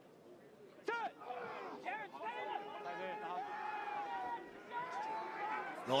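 Men's voices shouting and calling on a rugby pitch as a scrum is set, starting with a loud call about a second in.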